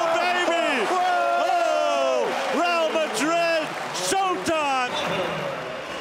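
A man's voice, the excited commentary of a basketball broadcast, with long drawn-out, swooping pitch, over arena noise. Two sharp knocks come about three and four seconds in.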